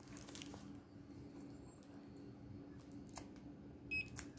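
Faint room tone with a low steady hum and a few light clicks, then a brief high electronic beep near the end.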